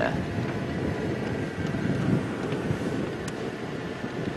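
Steady low rumble of wind on the microphone, with a few faint ticks.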